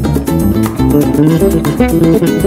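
Flamenco guitar playing a rumba in quick plucked notes.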